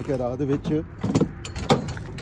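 A man's voice briefly, then a few sharp clicks and knocks about a second in and near the end as a truck's door and grab handle are handled.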